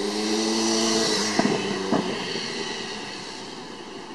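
A motor vehicle's engine hum swelling as it passes, loudest about a second in, then slowly fading. Two sharp knocks come near the middle.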